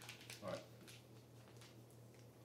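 Near silence: a steady low hum with a few faint light clicks and one softly muttered word.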